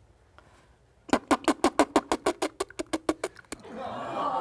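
iPhone camera shutter clicking in burst mode: a fast, even run of about twenty clicks, roughly eight a second, starting about a second in and stopping after two and a half seconds.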